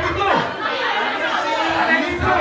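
Several people talking over one another in a crowded room, with no single voice clear enough to make out words.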